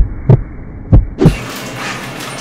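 Heartbeat sound effect: two deep double thumps, each pair about a third of a second apart and the pairs about a second apart, muffled as if heard underwater.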